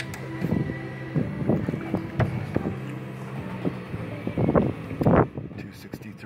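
A few knocks and bumps as a hand handles the case of a Bluetti EB240 battery power station, the loudest two near the end. Under them a steady low hum fades out about two-thirds of the way through, with some wind on the microphone.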